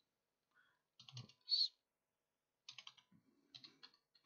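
Computer keyboard being typed on, keys clicking in short runs: a small cluster about a second in, then two quick runs of several keystrokes near the end, as the short command 'lsblk' is entered.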